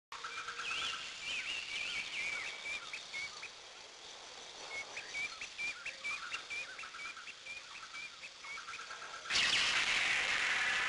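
Birds chirping: a run of short, high, repeated chirps, pausing and resuming, over a steady hiss. Near the end a louder rushing noise starts abruptly.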